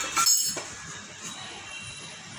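Two sharp metallic clinks in the first half second, with a faint high ringing tone lingering after, over a steady low background.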